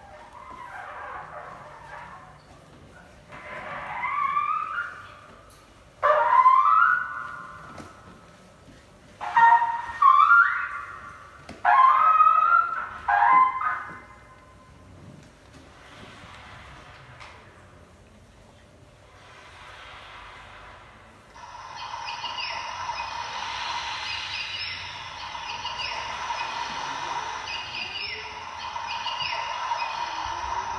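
Free-improvised electroacoustic music on turntable and objects: a string of short sliding, pitch-bending phrases with sudden loud starts, then, about two-thirds through, a dense steady high texture flecked with short quick glides.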